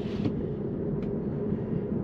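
Steady tyre and road noise heard inside the cabin of a Tesla electric car as it gathers speed, with no engine sound. A single faint click about a second in.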